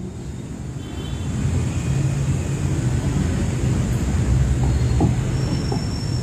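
Low, steady rumble of a vehicle engine, growing louder about a second in and then holding, with a few faint clicks near the end.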